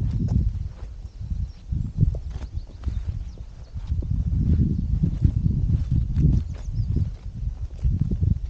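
Footsteps on a dry, gritty dirt path, an uneven run of low thuds and scuffs.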